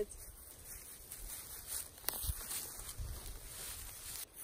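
Faint outdoor background noise with a low rumble, and one short click about two seconds in.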